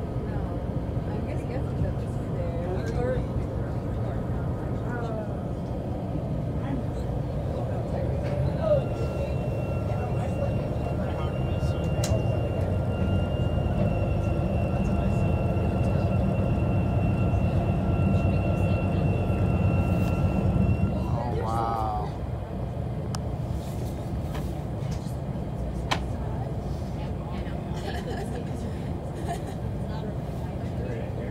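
A boat's engine rumbling steadily, heard on board, with people talking in the background. A thin steady high tone sounds from about nine seconds in and stops about twenty-one seconds in.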